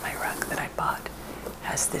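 Soft whispered speech over fingernails scratching a textured woven pillow cover.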